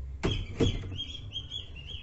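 Small birds chirping repeatedly in short high calls, with two sharp knocks in the first second over a low steady rumble.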